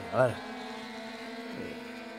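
A man's brief hesitant 'eh' at the start, then a steady low hum made of several unchanging tones.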